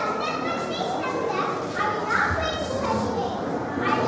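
A young girl speaking, her voice over the steady chatter of many children in a large hall.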